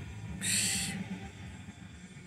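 A short breathy hiss, like a sharp exhale, about half a second in, lasting about half a second, over a faint low background hum.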